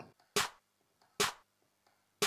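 A snare-clap drum sample triggered twice, about a second apart: two short, sharp hits.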